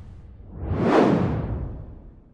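A whoosh sound effect on an animated logo outro: it swells to a peak about a second in, then fades away.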